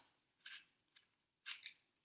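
Vegetable peeler blade shaving the skin off a green apple as it cuts a circle around the top: three or four short, faint scraping strokes.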